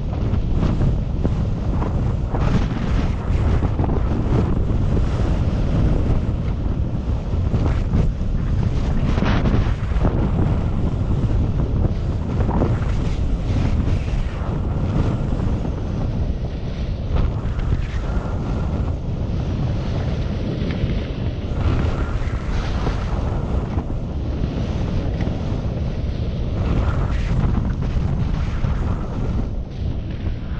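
Wind buffeting a GoPro Hero 7 microphone during a downhill ski run at about 20 km/h: a steady, heavy rumble, broken by irregular scraping hiss from the skis on groomed snow.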